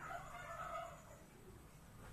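A faint bird call held for about a second at the start, then low background noise.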